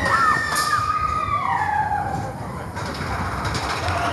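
Big Thunder Mountain Railroad mine-train roller coaster running through a dark stretch, a rumble of the train under long, high squeals that slide slowly up and down in pitch.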